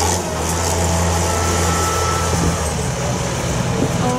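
Tractor and truck engines running at low speed, a steady low drone that eases off about two and a half seconds in. A faint high whine sounds over it in the middle.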